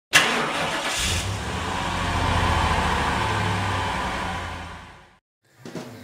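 A car engine starting with a sudden burst, catching about a second in and running with a steady low rumble, then fading out about five seconds in.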